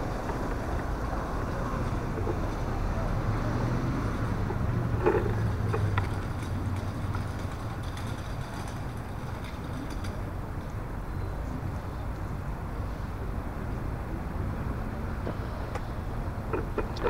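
Street traffic: a steady low rumble of engines and tyres, with a van driving close past at the start. A few short knocks come around five to six seconds in.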